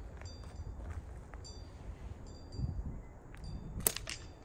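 A slingshot drawn and shot from a handheld trigger release: a single sharp snap of the release and bands near the end. Faint high metallic chime pings repeat every second or so throughout.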